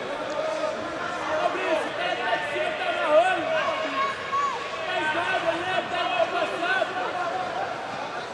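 A crowd of overlapping voices in an indoor sports hall, with several people calling out at once over a steady murmur.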